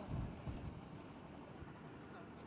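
Vehicle driving on a rough dirt road, heard from inside the cabin: a low rumble of engine and road noise, with a couple of low thumps in the first half second as it jolts over the surface.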